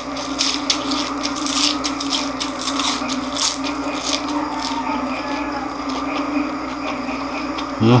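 Close-up crunchy chewing of deep-fried chicharon bulaklak (crispy pork mesentery), a quick run of crackles that thins out after the first few seconds, over a steady low hum. A short vocal "uh" comes near the end.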